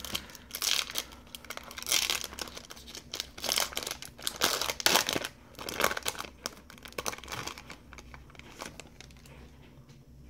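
Foil wrapper of a Bowman Chrome baseball card pack being torn open and crinkled by hand, a quick run of sharp crackling rustles that die down over the last couple of seconds.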